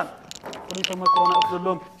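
A few light clicks, then a bell-like chime of two steady tones held for about a second, over faint background voices.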